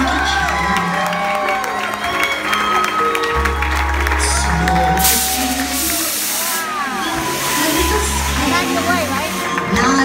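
Music playing over a crowd applauding and cheering. About five seconds in, a loud hiss lasting about a second and a half, the blast of CO2 fog jets firing.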